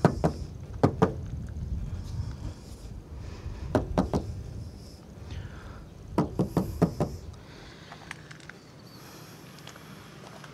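A few sharp, light knocks and clicks: two singly near the start, then a quick cluster of three or four about four seconds in and another about six to seven seconds in. Low rumbling handling noise underneath fades out after about seven seconds.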